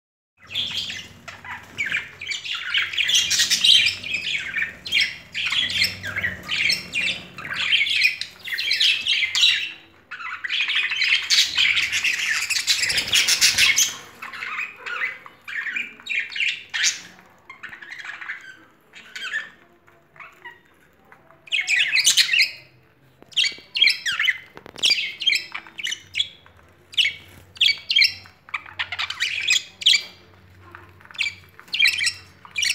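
Several budgerigars chirping and squawking in quick, overlapping calls. Between about ten and fourteen seconds in, the calls run together into a continuous chatter.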